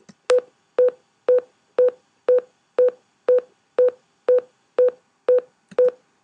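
Final Cut Pro's unrendered-audio beep: short beeps at one steady pitch, two a second, played in place of the clip's sound. It signals that the iPhone 4 clip's 44.1 kHz audio does not match the 48 kHz sequence settings and cannot play without rendering.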